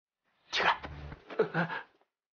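Two short non-word vocal sounds from a man, the first about half a second in and the second just under a second later, the second falling in pitch.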